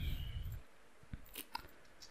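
Two faint short clicks about a second in, over low hum from the microphone.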